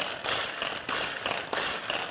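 Chef'n VeggiChop hand-powered pull-cord chopper being pulled several times in quick succession, each pull spinning the blades with a ratcheting whir as they chop nuts in the plastic bowl.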